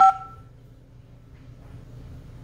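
2GIG alarm panel's touchscreen giving a single short key-press beep as a menu button is tapped, two tones sounding together and fading within about half a second.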